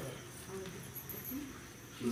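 Crickets chirring faintly and steadily, with a thin high steady tone and a soft background hiss.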